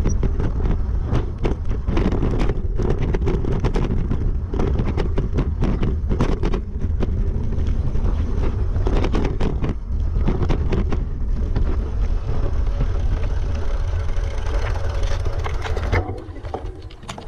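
Wind buffeting a bike-mounted camera microphone over the rumble of knobby mountain bike tyres on loose rocky trail, with frequent sharp rattles and knocks as the bike clatters over stones.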